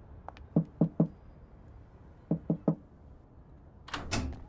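Knocking on a flat's front security door: two sets of three quick knocks, the second set about a second and a half after the first.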